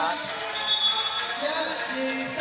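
Arena background of voices with a basketball bouncing on the court, and a brief high steady tone about half a second in.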